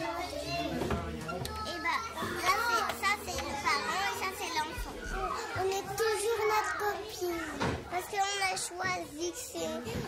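Young children's voices chattering as they play in a classroom, several high-pitched voices overlapping.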